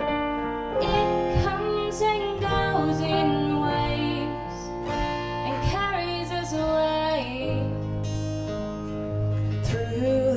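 A live song: an acoustic guitar is strummed while a woman sings over sustained backing chords.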